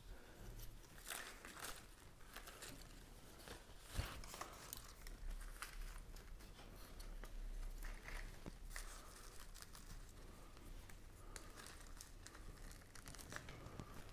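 Faint rustling and crinkling of hands working a moss-wrapped bromeliad against a dried branch and binding it on with thin reel wire, with scattered small clicks and a sharper tap about four seconds in.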